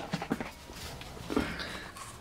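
Low room noise with a few short, faint vocal sounds, one just after the start and one about a second and a third in.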